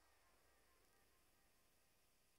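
Near silence, with only a faint hiss left after the music has faded out.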